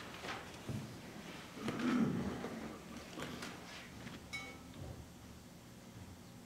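Quiet room with scattered rustles and small knocks as people shift and handle things, the loudest a low thump about two seconds in. A short, high ringing tone sounds just after four seconds.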